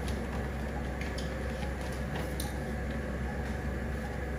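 Steady low hum of operating-room equipment, with a few faint clicks.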